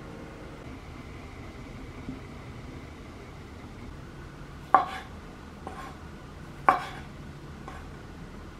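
Kitchen knife slicing through green grapes and striking a wooden cutting board: two sharp knocks about two seconds apart, each followed a second later by a fainter tap, over a steady low hum.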